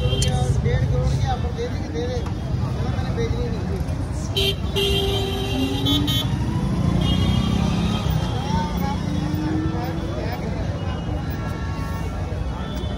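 Busy street-market ambience: steady low traffic rumble and the voices of passers-by, with short vehicle-horn toots now and then, the clearest about four and a half seconds in.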